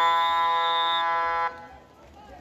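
Electronic game horn at a water polo match, sounding one long steady buzz that cuts off suddenly about one and a half seconds in.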